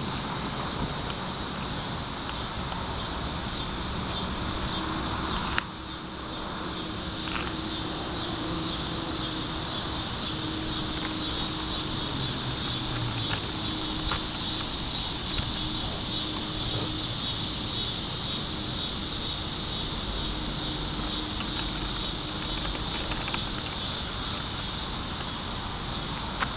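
Insects buzzing in a steady, high-pitched chorus that swells louder through the middle and eases off a little near the end. One sharp click comes about five and a half seconds in.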